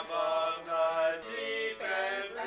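A man singing long held notes to an acoustic guitar.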